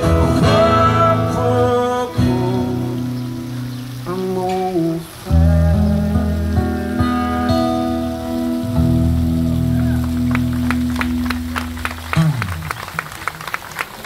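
Live acoustic guitar and voice finishing a song, ending on long held chords that die away about twelve seconds in. Scattered hand-clapping from a small audience starts over the final chord and carries on near the end.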